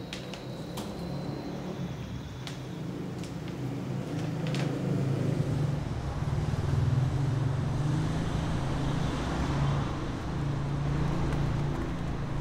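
Street traffic noise, with a motor vehicle's engine running and growing louder from about four seconds in.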